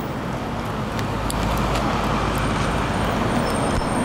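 City bus pulling in to a stop, its engine rumble growing louder about a second in over steady street traffic, with a thin high tone in the second half.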